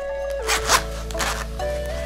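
Zipper on a fabric zip-around pouch wallet being pulled open in two short rasping strokes, over background music.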